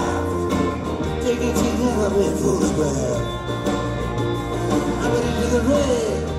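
Live rock band playing an instrumental passage: a lead line bending in pitch over a steady bass and drums.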